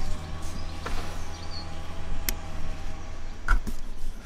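A steady low mechanical hum runs throughout, with a single sharp click about two seconds in. Near the end there are low knocks and wind buffeting on the microphone as the camera is moved.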